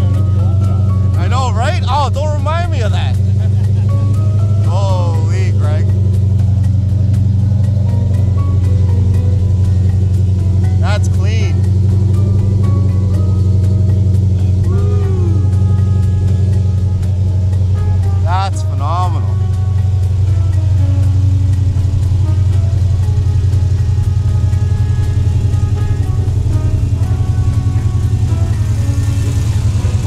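Fuel-injected 392 Hemi V8 in a Dodge Challenger restomod idling steadily with a deep, even tone through TTI two-inch headers and a mild cam.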